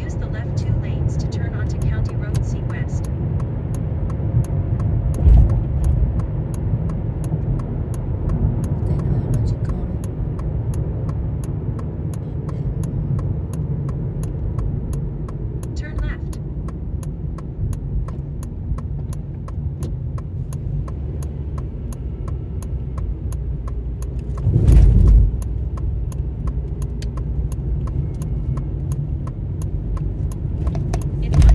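Steady road and engine rumble of a car being driven, heard from inside the cabin, with a faint regular ticking throughout. About 25 seconds in there is a short loud thump, as the car goes over the railway tracks.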